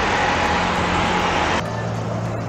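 Road traffic noise from auto-rickshaws and cars on a wide city road. About one and a half seconds in it cuts off abruptly to quieter road noise with a steady low engine hum.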